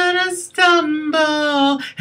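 A woman singing a cappella, holding long notes that step down in pitch, with short breaks about half a second in and near the end.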